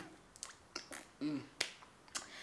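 A few light, sharp clicks of long fingernails on a smartphone as it is picked up and handled, with a short closed-mouth "mm" about halfway through.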